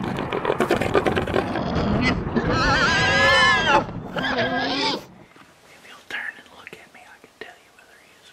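Intro sound effect: a loud rumbling roar with a high, wavering, animal-like squeal on top, cutting off abruptly about five seconds in, followed by faint room sound with a couple of small clicks.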